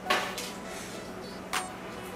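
A short breathy burst, then a few light clicks and taps of things being handled on a table, the sharpest about one and a half seconds in.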